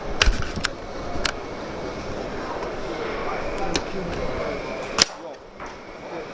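Bolt of a Silverback HTI spring-powered airsoft sniper rifle, set up as a pull bolt, being worked by hand. A few light metallic clicks come in the first second and more follow later, with a sharper click about five seconds in as the bolt locks. A steady murmur of background voices runs underneath.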